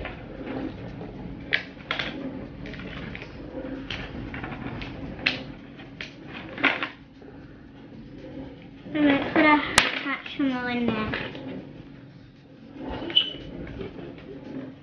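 Hands handling small plastic toys and a pink plastic capsule on a table: scattered light clicks and taps, with one sharp snap about ten seconds in.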